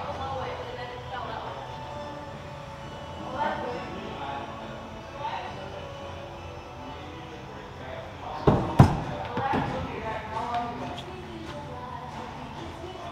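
Thrown axe striking the wooden target board: two sharp thuds about a third of a second apart, a little past the middle, over steady background chatter.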